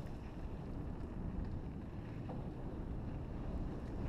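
Wind rushing over the camera microphone with the low, steady rumble of a mountain bike rolling fast over a dirt trail.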